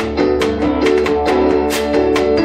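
Live band playing an instrumental passage: a saxophone holds a stepping melody over guitar, bass and a steady percussive beat.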